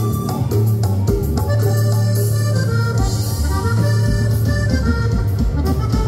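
Cumbia music with an accordion playing the melody over a sustained bass line and a steady beat.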